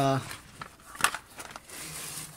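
Rustling handling noise from a handheld camera being moved about under a car, with one sharp click about a second in.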